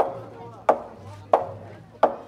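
Festival taiko drum on a procession cart struck at a steady walking pace: three evenly spaced hits, about one every two-thirds of a second, each with a short ring.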